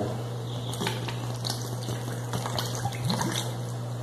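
Coconut milk being poured into thick corn-flour cake batter in a bowl, a soft liquid pour, over a steady low electrical hum.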